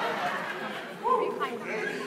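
Crowd chatter: many voices talking over one another, with one voice rising above the rest about a second in.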